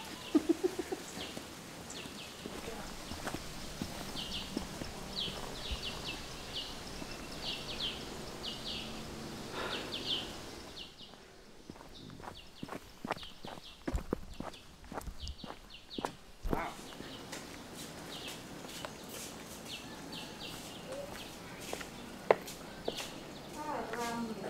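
Faint outdoor ambience with a bird chirping repeatedly in short high notes, about twice a second. Partway through, a run of soft knocks comes in.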